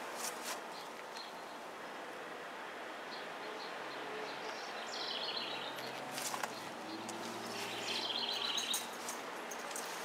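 A songbird singing short trills of rapid high notes, once about five seconds in and again near eight seconds, over steady outdoor background noise.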